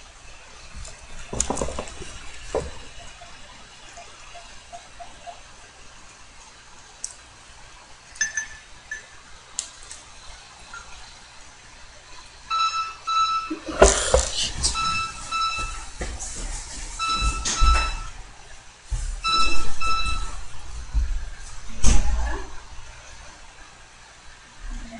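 Electronic beeping in short groups of high beeps, repeating about every two seconds through the second half, with several sharp knocks and thumps among them; the first half is quiet room tone with a few faint clicks.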